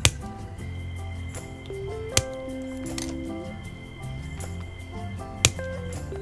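Background music with a gentle melody, over which hobby nippers snip plastic model parts off a runner: three sharp clicks, at the start, about two seconds in, and near the end.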